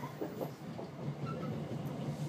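Class 323 electric multiple unit running along the line, heard from inside the carriage as a steady low hum and rumble.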